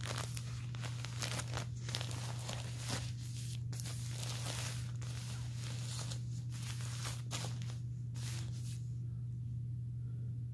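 Plastic-backed adult diaper crinkling and rustling as a hand rubs and presses its outer shell, in irregular bursts that stop near the end, over a steady low hum.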